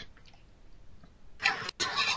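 A pause with faint room tone, then a voice comes in about a second and a half in.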